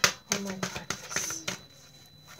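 Oracle cards being handled and shuffled: a sharp snap of cards at the start, then scattered light clicks, with a woman's brief exclamation of "Oh my".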